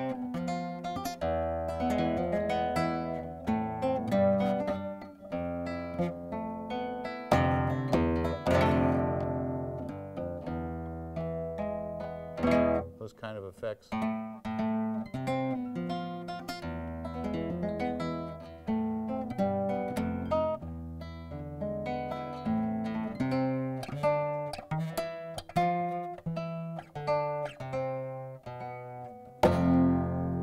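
Nylon-string flamenco guitar played solo: a melodic line of plucked notes doubled in octaves, some held with vibrato, broken by quick strummed chords about eight and thirteen seconds in.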